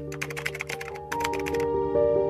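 Keyboard-typing sound effect: a fast run of clicks that stops a little before the end, over soft background music with sustained notes.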